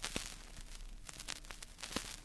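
Vinyl record surface noise in the quiet groove between two tracks: faint hiss with scattered crackles and clicks over a low steady hum.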